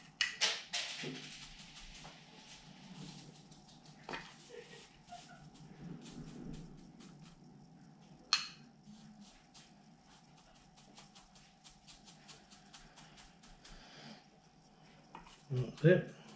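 A chopstick prodding and tamping gritty bonsai soil down into a pot to settle it between the roots: scratchy rustling of grit with scattered clicks, busiest in the first second, and one sharp click about eight seconds in.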